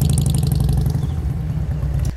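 A large touring motorcycle's engine running at low speed through slow, tight parking-lot turns, with a steady low note that eases slightly toward the end.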